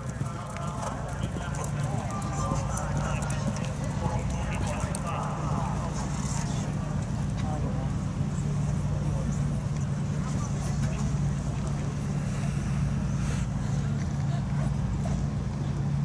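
Horse cantering in a sand arena, its hoofbeats soft under a steady low hum that runs throughout, with faint voices in the background.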